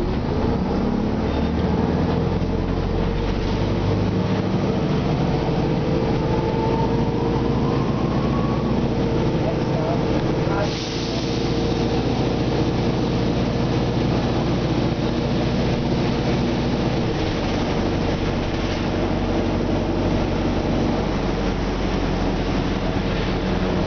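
Nova Bus RTS city bus's diesel engine and drivetrain heard from inside the cabin while the bus drives, a deep running sound with a whine that rises in pitch as it picks up speed and a brief drop in level about halfway through.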